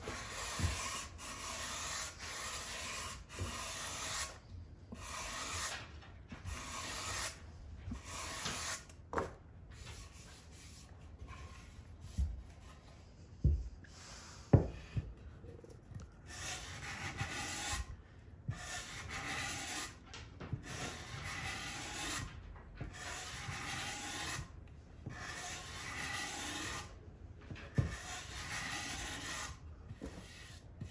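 Hand sanding block working the sides of an unfinished wooden guitar body in long, even back-and-forth strokes, about one a second. A few knocks sound in the middle, where the strokes briefly stop.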